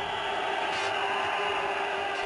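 Steady hiss with a few faint held tones underneath, unchanging throughout.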